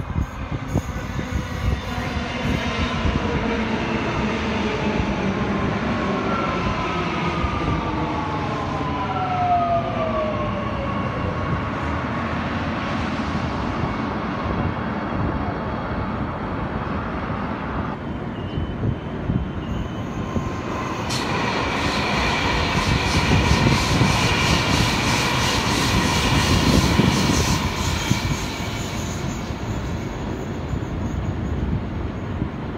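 Suburban electric multiple-unit train running in along the platform, its traction motors whining and falling in pitch as it brakes, over a steady rumble of wheels on rail. Later a steadier whine and rumble build up, louder near the end.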